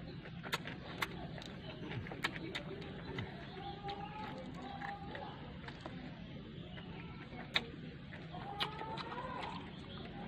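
A person eating fried fish and rice by hand, chewing with several sharp mouth clicks and lip smacks scattered through, the loudest a little after seven seconds. Faint wavering pitched calls sound in the background.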